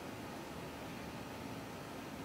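Faint, steady hiss of room tone, with no distinct sound standing out.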